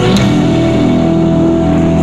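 Live band music: electric guitar and bass guitar playing sustained notes, with a sharp drum or cymbal hit just after the start.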